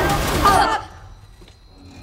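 A voice over music for under a second, cut off abruptly into a quiet stretch with only faint held tones, which begin to swell near the end.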